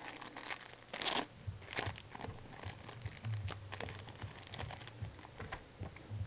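Plastic card sleeves crinkling and rustling in quick, irregular crackles as a trading card is slid into them by hand, loudest about a second in.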